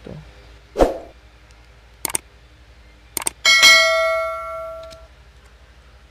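Subscribe-button sound effect: two quick clicks, then a bright bell ding that rings out for about a second and a half. A short knock comes just before the first second.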